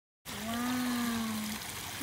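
Water trickling steadily at a rocky pond, starting after a moment of silence. Over it, a person's voice holds one long, slightly arching note for about a second.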